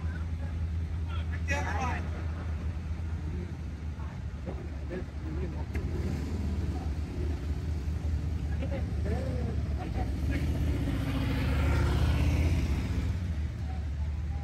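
Low, steady engine rumble of slow-moving vehicles in a passing convoy, swelling louder near the end as one passes close.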